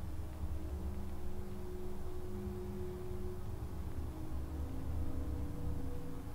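Low, steady ambient drone with a deep rumble and a few faint held tones that fade in and out.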